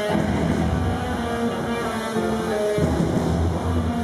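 Live rock band playing loudly: electric guitars through Laney amplifiers over bass and drums, sustaining a heavy riff of held notes.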